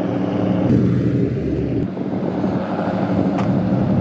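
The LS1 V8 of a BMW E36 running steadily as the car is driven slowly, a low, even engine note.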